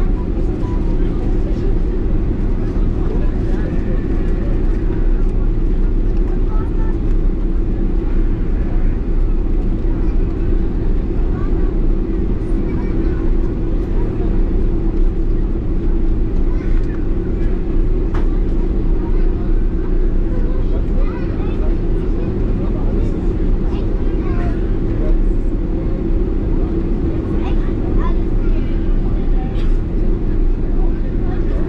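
Steady cabin noise inside a Boeing 747-400 taxiing after landing: the jet engines and cabin air make a constant low rumble with a steady hum. Faint passenger voices run underneath.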